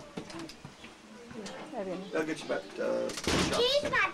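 A young child's voice, without clear words, ending in a loud, high-pitched squeal near the end.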